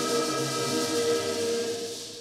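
Choir holding a sustained chord with a steady hiss over it, both fading away near the end.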